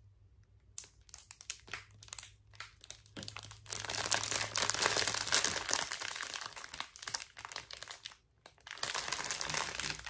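Clear plastic packaging around small bags of diamond painting drills crinkling as it is handled and turned over: scattered crackles at first, then a dense stretch of crinkling from about four seconds in until about eight seconds in.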